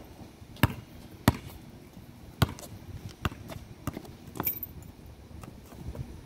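Basketball bouncing on asphalt: about six separate, sharp bounces at uneven intervals, as the ball is dribbled slowly.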